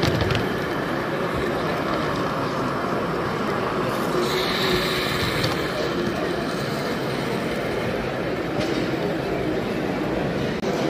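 Steady hubbub of a crowded exhibition hall, mixed voices, as a radio-controlled live-steam garden-scale locomotive runs slowly past, with a brief hiss about four seconds in.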